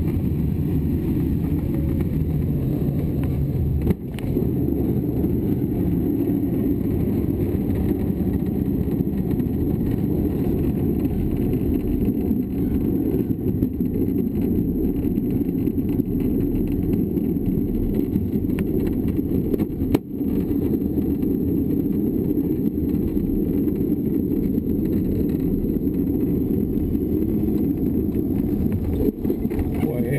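A glider rolling on its wheel along a paved runway after landing, heard from inside the cockpit as a steady low rumble from the wheel and airframe, with two brief knocks.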